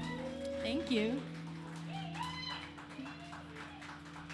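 Electric guitars' last chord ringing out and fading at the end of a live rock song. Short wavering whoops and calls from the audience ride over it.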